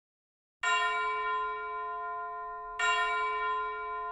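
A bell-like chime struck twice, about two seconds apart, each strike ringing on and slowly fading.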